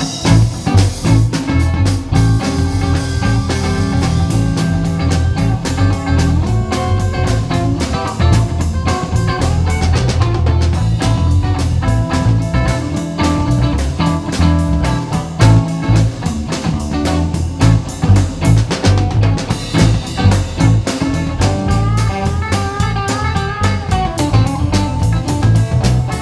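Live blues-rock band playing an instrumental passage: electric guitar lines over electric bass and a drum kit keeping a steady beat, the guitar bending notes near the end.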